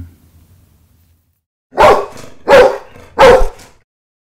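A dog barking three times, about two-thirds of a second apart, starting a little under two seconds in.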